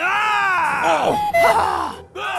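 A cartoon-style character voice groaning, its pitch swooping up and down in several arches, then dropping away at the end.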